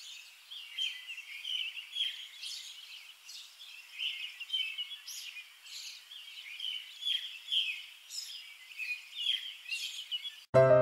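Small songbirds chirping outdoors: a continuous run of short, high chirps and twitters, several a second, over faint outdoor background noise.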